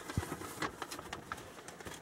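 Faint bird calling with scattered small clicks and rustles.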